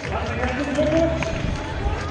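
Speech over the steady background noise of a crowd of spectators.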